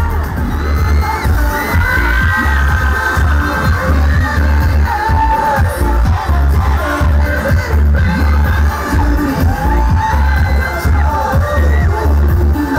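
K-pop dance music played through a concert PA during a boy group's live stage performance: a loud, steady bass beat under singing, with the crowd cheering.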